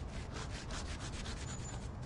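A gloved hand rubbing a cloth over chalk on concrete paving slabs to blend it in, a scrubbing sound in quick, even strokes.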